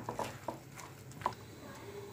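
Silicone spatula stirring a thick gram-flour and egg batter in a glass bowl: quiet squelching with a few soft taps of the spatula against the glass.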